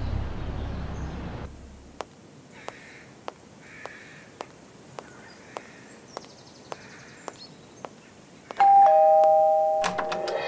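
A two-tone electronic doorbell rings near the end, a high note followed by a lower one, ringing on. Before it, steady soft ticking at a little under two a second, with a low rumble fading away at the start.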